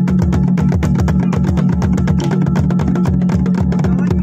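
Fast, even drumming for an Uttarakhand night jagar ritual, with a steady low tone held beneath the beats.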